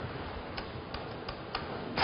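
Four soft clicks, unevenly spaced over about a second, over a steady room hiss: keys being pressed while a division is worked out.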